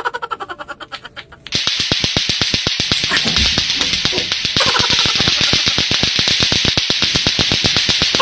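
Lato-lato clacker toys, two hard plastic balls on a string, clacking rapidly in a fast run of sharp clicks. About a second and a half in, a much louder, denser clatter with a steady hiss over it takes over.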